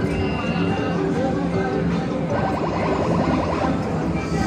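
Electronic arcade machine music: a plain beeping tune that steps from note to note, with a quick run of rapidly repeated beeps in the middle.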